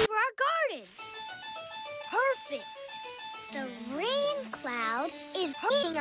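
Cartoon soundtrack of plucked harpsichord notes, the sound the show gives its rain cloud, with voices sliding up and down in pitch over them several times.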